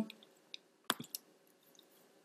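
A few faint computer mouse clicks in a quiet room: one about half a second in, then a small cluster of three around one second.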